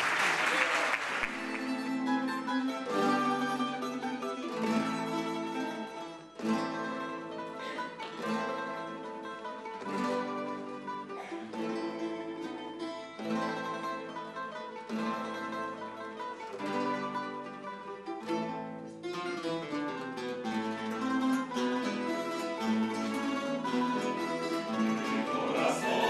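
A rondalla of Spanish guitars and bandurrias playing an instrumental passage of plucked chords and melody. A brief burst of noise sounds at the very start.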